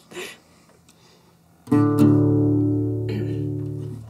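Acoustic guitar: two strummed chords about a second and a half in, left to ring and slowly fade.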